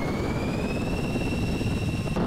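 Cartoon sound effect of a twin-propeller tiltrotor aircraft lifting off: a high engine whine that rises for about a second and then holds steady, over a low rotor rumble.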